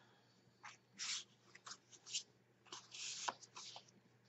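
Cardstock pages and photo mats of a paper mini album being handled: faint, intermittent rustling and sliding of paper with a few light taps.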